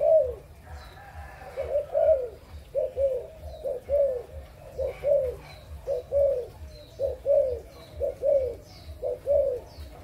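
Adult spotted dove cooing over and over, a low arched two-note coo about once a second.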